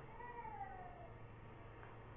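A faint, short call falling in pitch in the first second, over a low steady hum.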